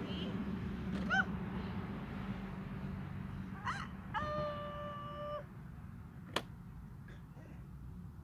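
A toddler's two short, rising-and-falling squeals, then a steady held tone about a second long and a single sharp click, over a low steady hum.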